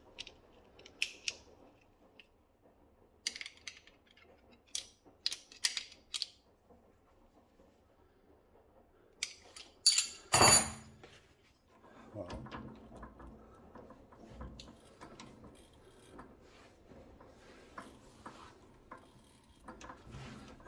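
Metal clicks and clinks of a threaded knob and tools being handled at a lathe's three-jaw chuck, with one loud clank about ten seconds in. From about twelve seconds on, a low, continuous scraping rattle as the chuck key is worked to clamp the knob's stud.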